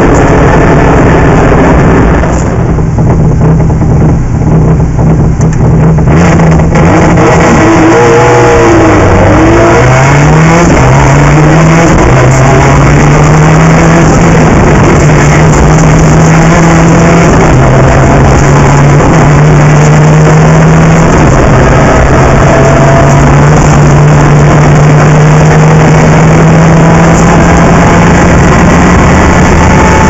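Rally car engine driven hard, heard from onboard: the engine note eases off for a few seconds about two seconds in, then climbs again through quick gear changes around ten seconds in and holds at steady high revs.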